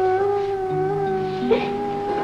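Background music: a long held woodwind note, with lower accompanying notes coming in beneath it about halfway through.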